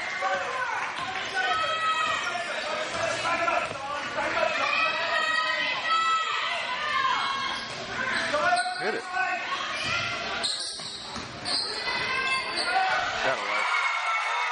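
Basketball bouncing on a hardwood gym floor during play, with many short sneaker squeaks and voices calling out, all echoing in a large gym.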